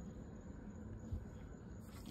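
Quiet workshop room tone with a faint low hum, and one soft knock about a second in.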